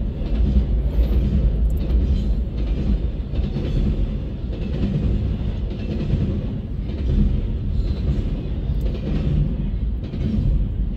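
Double-stack intermodal freight train rolling past at speed: the steady low rumble of the container well cars' wheels on the rails, heard from inside a car.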